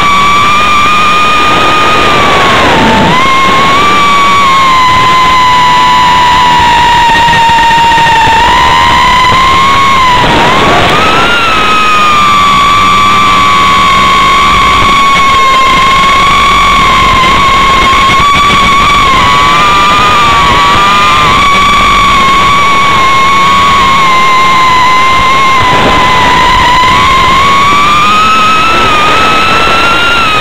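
FPV quadcopter's rewound 2700kv brushless motors spinning six-blade 5x4.6 props. They make a loud wavering whine, buried in a hiss like radio interference, that rises and falls in pitch with the throttle. The pitch drops briefly about three seconds in, again near ten and near twenty-six seconds, and climbs toward the end.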